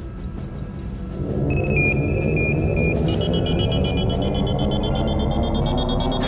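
Dramatic synthesized score swelling beneath sci-fi console sound effects as the starship's device is switched on: a low rumble builds from about a second in, an on-off beep starts shortly after, and a cluster of high electronic tones with a falling sweep comes in about halfway through.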